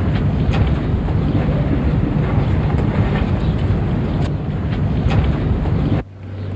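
Wind buffeting a camcorder microphone: a loud, rough rumble that starts and stops abruptly.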